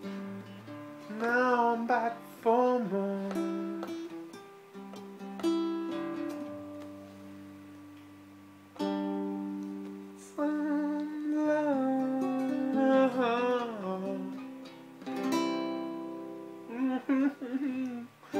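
Acoustic guitar played slowly, chords strummed every few seconds and left to ring out, with a man's wordless, drawn-out singing over it in several long phrases.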